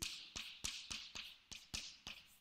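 Chalk on a blackboard as an equation is written: a series of sharp taps, about seven in two seconds, several followed by a short scratchy stroke.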